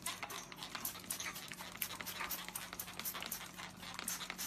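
German shepherd panting close by: quick, short breaths several times a second.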